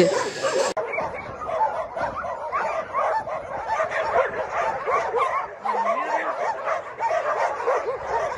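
Many dogs in shelter pens barking together: a dense, continuous chorus of short overlapping barks that starts just under a second in.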